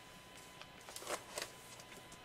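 A page of a ring-bound 12x12 scrapbook album, sleeved in plastic page protectors, being turned by hand: a few short, faint rustles about a second in.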